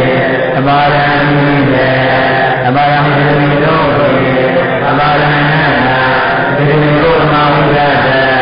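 A monk's voice chanting a recitation in a steady sing-song, holding each note for about a second, with short breaks between phrases.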